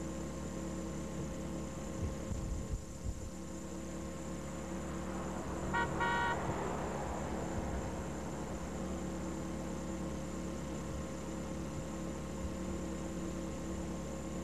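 A short car horn toot about six seconds in, over a steady electrical hum, with a few low bumps a couple of seconds in.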